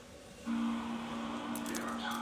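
A woman's closed-mouth hum, one long steady note starting about half a second in: the drawn-out 'mm' of an 'mm-hmm'. A few faint clicks come near the end.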